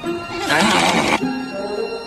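Animated-film soundtrack: background music under cartoon sound effects, with a brief burst of noise from about half a second in to just past a second.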